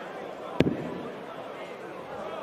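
A single sharp thud of a steel-tip dart striking a Winmau bristle dartboard, about half a second in, over a steady background murmur of the arena crowd.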